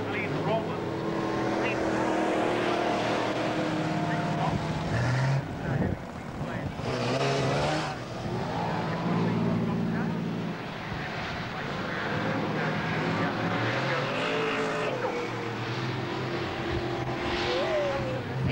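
Stockcar engines running and revving as the cars race around a dirt speedway oval, several engine notes overlapping and rising and falling in pitch.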